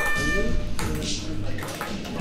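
Ping pong balls clicking a few times, light hard taps about a second in and again near the end. A steady electronic-sounding tone cuts off about half a second in.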